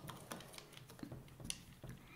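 Faint, irregular light clicks and taps of laser-cut acrylic panels being fitted together and handled.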